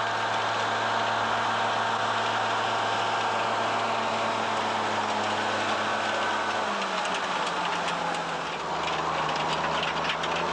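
Heavy tracked carrier's engine running steadily, its note stepping down slightly in pitch about seven seconds in as it slows. Light clicking appears from then on.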